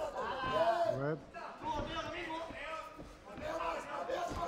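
Raised men's voices calling out, the words not clear.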